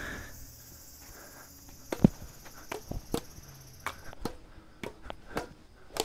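Badminton rackets hitting a shuttlecock, a string of sharp taps, the loudest about two seconds in. Behind them is a steady high insect drone that stops about four seconds in.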